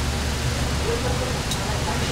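Metal tongs working in an enamel pot of meat, with one light click about one and a half seconds in, over a steady low rumble and faint background voices.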